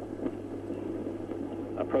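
Background noise of an old TV broadcast sound track: a steady low hum under an even hiss, with no clear event. A man's voice starts again near the end.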